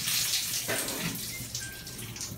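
Shower head water spraying onto a tiled floor, dwindling to a thin trickle and dying away as the water supply cuts off.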